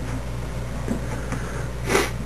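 Faint, light clicks and handling noises of a RAM stick being pressed into a motherboard's memory slot, over a steady low hum. A short breathy puff comes near the end.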